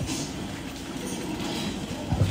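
Steady low rumble with a hiss over it, at a moderate level and without any distinct events.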